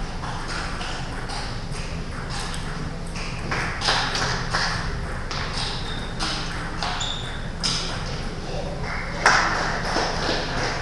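Celluloid/plastic table tennis balls clicking off bats and tables in quick rallies on two tables at once, an irregular stream of sharp pocks, a few of them louder.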